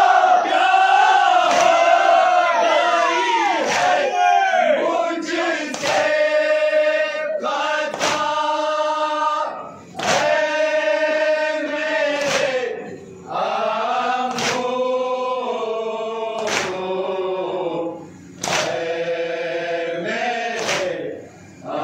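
Men's voices chanting a nauha (mourning lament) together in unison, with sharp collective chest-beating slaps of matam landing about every two seconds in time with the chant.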